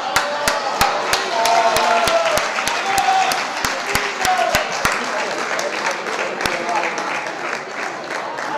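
An audience applauding, with one close pair of hands clapping steadily about three times a second. The clapping thins out after about five seconds, over a murmur of crowd voices.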